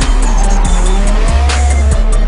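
Tyres squealing as a Nissan S13 drift car slides sideways, with its engine revving. Hip-hop music with heavy bass plays over it.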